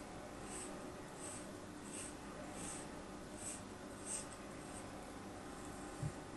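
Thin blade scoring a ball of kinetic sand: soft, crisp scratchy strokes about one and a half a second, six in all, stopping about two-thirds of the way in.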